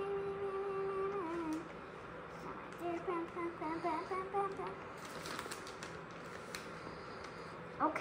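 A child humming one long steady note that stops about a second and a half in, then a short wavering hummed phrase a couple of seconds later, followed by a few faint light clicks.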